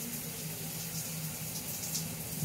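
Steady background hiss with a faint low hum underneath, and no distinct event.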